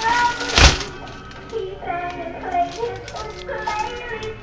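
A single thump about half a second in as a foil cake pan is flipped over onto the counter, followed by background music.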